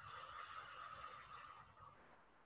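A woman's slow exhaled breath, a faint breathy hiss that fades out near the end.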